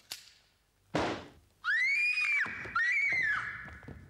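A sharp crack about a second in, then two shrill, high-pitched cries, each rising and falling and lasting under a second, as a man collapses to the floor on stage.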